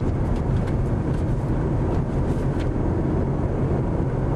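Car driving along a street, heard from inside the cabin: a steady low rumble of engine and road noise.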